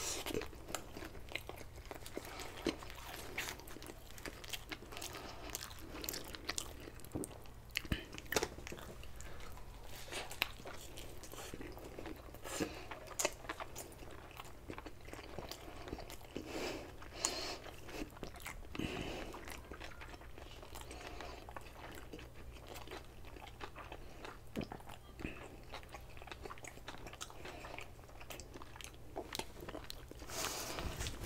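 Close-up mouth sounds of biting and chewing a nori-wrapped sushi burrito, with wet chewing and many small crunchy crackles right through, over a faint steady low hum.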